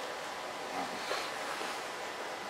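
Steady hiss of room tone and recording noise, with a few faint, indistinct sounds in it.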